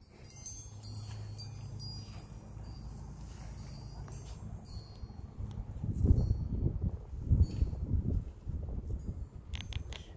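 Wind chimes tinkling with scattered light high notes, over a low steady hum in the first half. From about six seconds in, wind buffets the microphone in low rumbling gusts.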